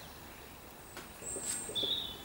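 A bird chirping: a short, high whistled note about a second in, then a lower whistled note near the end.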